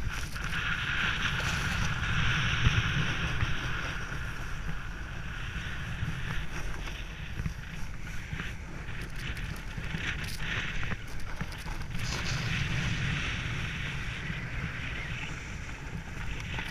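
Wind buffeting a GoPro action camera's microphone while sliding downhill, over the steady hiss and scrape of edges running on packed snow. The hiss swells through turns near the start and again about twelve seconds in.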